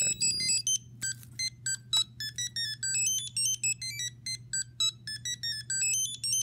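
ImmersionRC Vortex 250 Pro racing drone playing its power-up startup tune on battery connection: a quick melody of short electronic beeps hopping between pitches, the drone's sign that it has powered up.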